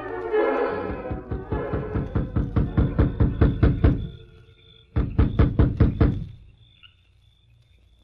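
An orchestral music bridge ends in the first second. Radio sound-effect hoofbeats follow, a steady run of knocks growing louder and then stopping. About a second later comes a short, quick run of knocks on a door.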